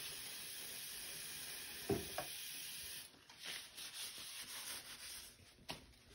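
Tap water running steadily into a bathroom sink, with a knock about two seconds in; the water stops suddenly about three seconds in, leaving soft intermittent rubbing and rustling of a paper towel drying a denture cup.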